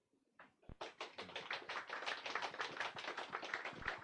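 Audience applause starting about a second in, a steady patter of hand claps with separate claps still distinct.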